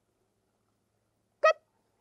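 Near silence, then one short spoken word, 'good', from a woman about one and a half seconds in: the trainer's marker word telling a trained sea otter that it did the correct behavior.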